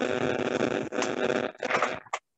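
Static: a steady hiss transmitted over a Zoom call from a participant's open microphone, breaking off after about a second and a half, with a short burst near the end.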